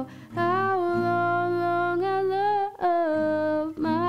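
A woman singing long wordless held notes, an "oh"-like vocalise, with slight vibrato, in three phrases broken by short breaths, over acoustic guitar.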